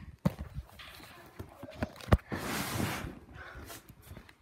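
Handling and movement noise from a phone being carried and jostled: scattered knocks and thumps with fabric rustling. There is one sharper thump about two seconds in, followed by about a second of rustling.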